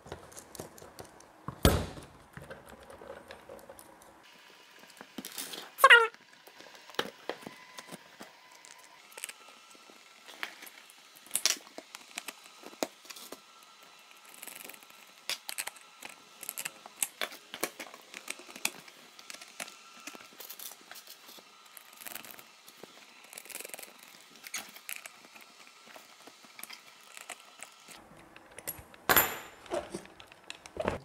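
Hands fitting large rubber RC monster-truck wheels onto their hubs and tightening them with a small wrench: scattered light clicks, taps and rattles of plastic and metal parts. A sharp knock comes about two seconds in, and a short gliding squeal about six seconds in.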